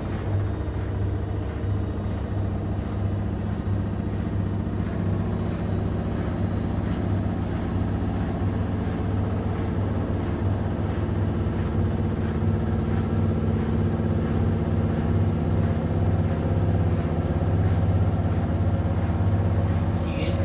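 Front-loading washing machine in its wash cycle: the drum turning with water sloshing inside, over a steady low motor hum that grows slightly louder toward the end.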